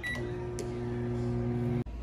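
Hamilton Beach microwave oven: one short keypad beep as the button is pressed, then the oven starting up and running with a steady low hum and a single click about half a second in. The hum cuts off suddenly near the end.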